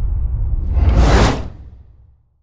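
Logo sting sound effect: a deep, steady low rumble with a whoosh that swells about a second in, then the whole sound fades out near the end.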